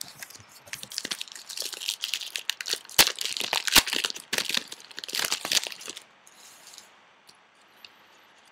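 A 2009 Donruss Rookies & Stars football card pack wrapper being torn open and crinkled: a run of crackling and crumpling for about six seconds, with two sharp cracks in the middle, then it dies away.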